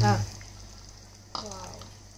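A faint liquid sound as coconut milk is poured from a mixer jar into a pan of simmering vegetable stew, under two brief bits of speech, one at the very start and one about halfway through.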